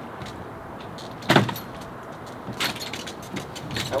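A loaded double jogging stroller bumped down porch steps: a loud thump a little over a second in and a second, lighter clatter of knocks about a second and a half later, over a steady background.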